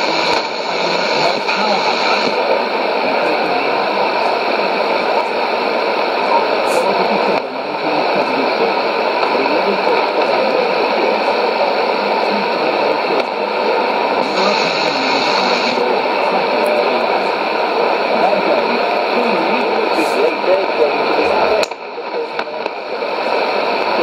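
Shortwave AM broadcast on 6160 kHz playing through a Sony ICF-2001D receiver's speaker: a voice half-buried in a steady hiss of noise, too faint to make out words. The sound dips briefly about seven seconds in and again near the end.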